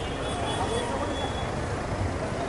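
Busy street ambience: steady traffic noise with a crowd's voices mixed in.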